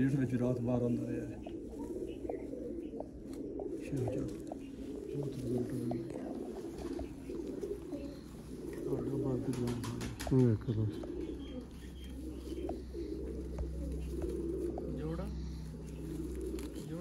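Several domestic pigeons cooing together, with deep, overlapping coos that swell and fade in repeated phrases throughout.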